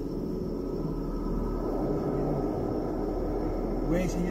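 A steady low rumble of background noise with a faint hum and no distinct events.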